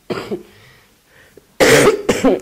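A woman coughing: a short cough just at the start, then a much louder one near the end.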